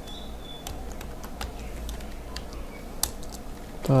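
Typing on a computer keyboard: irregular keystroke clicks, a few every second, over a steady low hum.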